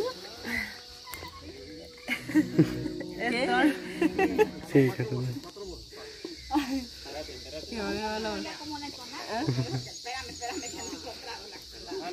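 Steady high-pitched drone of cicadas under people's talking voices.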